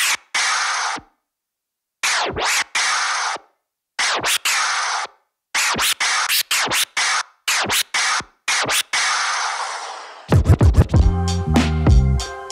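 A sample scratched from a Serato control vinyl through a Pioneer DJM-S5 mixer, played as repeated march scratches. Each is a quick back-and-forth baby scratch followed by a forward scratch that lets the sample play out before it is cut off, with brief silences between, and the cuts are handled by the Scratch Cutter on its march pattern. A drum beat comes in about ten seconds in, with scratches over it.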